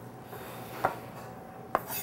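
Chef's knife knocking on a wooden cutting board while chopping onions: two light knocks about a second apart, with faint scraping between them.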